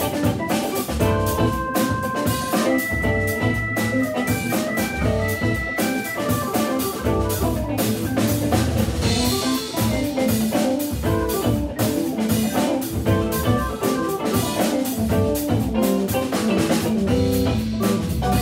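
Live jazz organ trio playing: Hammond B3 organ, electric guitar and drum kit, with a run of held high notes over a steady drum groove in the first few seconds.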